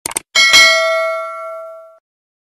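Two quick mouse clicks, then a single bell ding that rings on and fades over about a second and a half. It is the sound effect of a YouTube subscribe-button and notification-bell animation.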